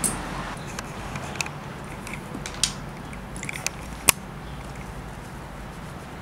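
A scatter of small, sharp clicks and taps from handling a leather cowboy boot and its spur and strap while conditioner is worked in with an applicator. The sharpest click comes about four seconds in, over a steady low hum.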